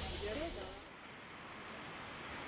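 Steady high hiss and low hum of background ambience with faint distant voices. About a second in, it cuts off abruptly to a quieter, even outdoor hush.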